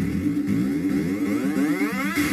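Video game sound effect: a sweep rising steadily in pitch for about a second and a half, over the game's background music.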